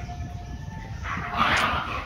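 A single harsh animal call lasting under a second, about halfway through, the loudest thing here.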